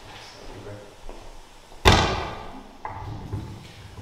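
A sharp thump with a short ringing tail about two seconds in, then a softer knock a second later: a handheld microphone being bumped as it is passed from one person to the next.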